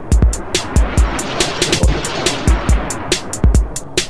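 Breakbeat electronic dance track: a drum-machine beat of deep kicks and quick hi-hat ticks. A hissing noise swell rises over the beat, peaks around the middle and fades out a second before the end.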